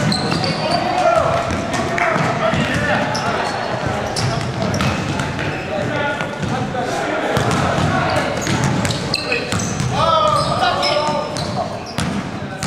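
Basketballs bouncing on a hardwood gym floor, mixed with players' voices and calls, all echoing in a large gymnasium.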